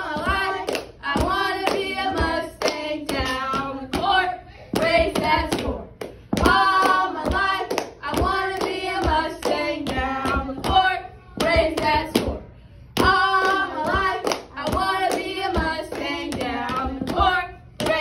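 Young girls' voices chanting a cheer in a sing-song rhythm, in repeated short phrases, punctuated by sharp hand claps.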